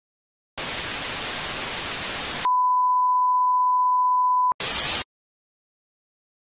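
Old-television sound effect: a burst of TV static hiss lasting about two seconds, then a steady high test-tone beep held for about two seconds. It is cut off by a click and a last short burst of static.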